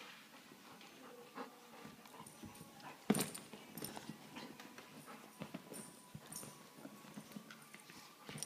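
A big dog moving about: many small scattered clicks and taps, with one louder knock about three seconds in.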